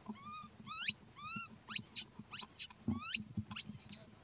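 Baby macaque crying: a rapid series of short, high-pitched calls, several a second, some arching up and down and some rising steeply. A soft low thump comes about three seconds in.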